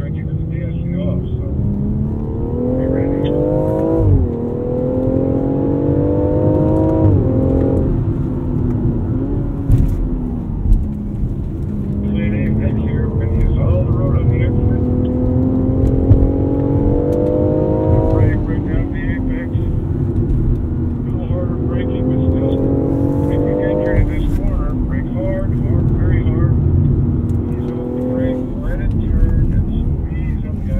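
The 2019 BMW X4 M40i's turbocharged 3.0-litre inline-six, heard from the driver's seat, pulling hard through the gears. The pitch climbs and then drops sharply at upshifts about four and seven seconds in. It winds down and climbs again, with further upshifts around eighteen and twenty-four seconds, and eases off near the end.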